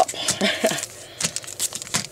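Foil wrappers of Pokémon trading card booster packs crinkling as the packs are handled and sorted, in irregular crackly rustles, with a short laugh at the start.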